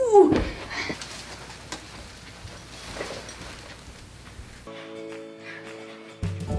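A girl's voice lets out an effortful cry that wavers and then slides steeply down in pitch, followed by a quiet stretch with a couple of faint knocks. Background music with sustained tones comes in near the end.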